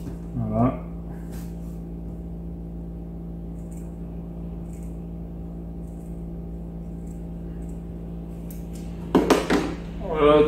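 Scissors making faint, scattered snips through a sock, over a steady background hum. A short vocal sound comes just after the start and a louder burst of voice near the end.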